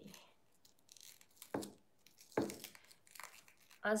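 Kitchen knife cutting through the green stalks of a round white vegetable on a wooden cutting board: three or four separate strokes, each a short crunch with a knock on the board.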